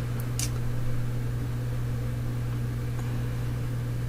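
A steady low electrical hum with a faint even hiss, like a running fan or mains hum, and two faint clicks just after the start.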